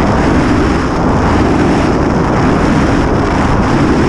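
Loud, steady rush of air buffeting a camera's microphone in skydiving freefall.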